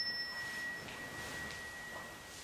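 A small struck metal bell rings on with one clear, high, steady tone that slowly fades after a strike just before. A fainter, higher overtone dies away within the first second.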